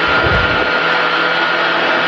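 R5 rally car's engine running at a steady pitch under load, heard from inside the cockpit with loud gravel and road noise; a low thudding in the first half-second.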